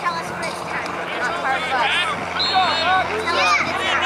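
Overlapping high-pitched voices of spectators and young players shouting and calling out across a lacrosse field, indistinct and continuous, with a brief high steady tone about two and a half seconds in.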